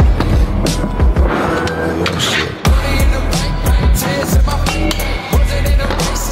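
Hip-hop track with a heavy, regularly pulsing bass beat, over the sound of stunt scooter wheels rolling and clattering on skatepark ramps.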